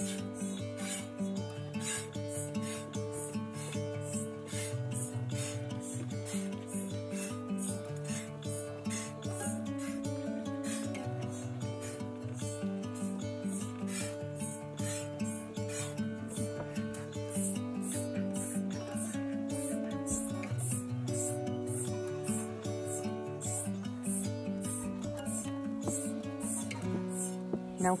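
Goat milk squirting into a stainless steel bowl as a Nigerian Dwarf goat is hand-milked: short hissing squirts in a steady rhythm, about two a second. Background music plays underneath.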